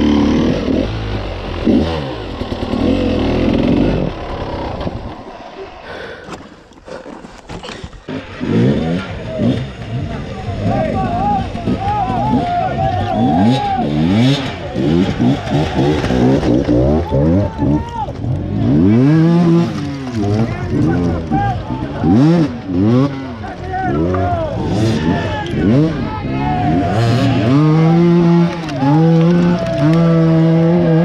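Enduro motorcycle engines revving up and down again and again under load on a steep rocky climb, with several bikes overlapping. Near the end one engine holds a steady note.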